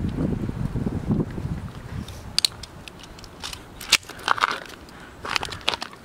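Plastic of a Casio fx-7700GE graphing calculator cracking and snapping as it is broken apart. A couple of seconds of low rumbling handling noise give way to a scattering of sharp cracks.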